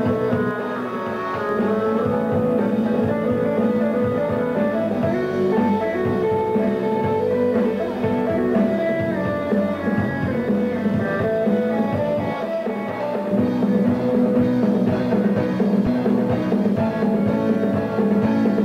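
Rock band playing live: electric guitar playing over bass guitar and drum kit, with no vocal in this stretch.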